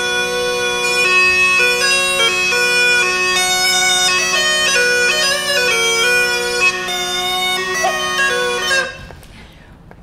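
Baroque musette (a French bellows-blown bagpipe) playing a melody over steady drones, which cuts off about nine seconds in. It is played as a demonstration of how modern musettists get dynamics from an instrument that otherwise cannot vary its loudness.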